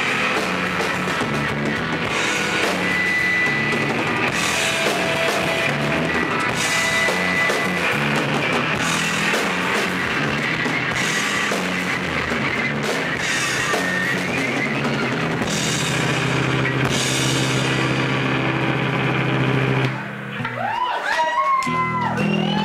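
Live rock band playing with drum kit, electric guitar and bass; the song ends about two seconds before the end on a held low note, and the audience starts whooping and cheering.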